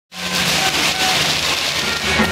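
A string of firecrackers going off in a rapid, continuous crackle.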